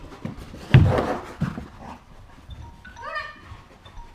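A dog barking during ball play, the loudest bark about a second in, followed by a few smaller sounds and a short rising call about three seconds in.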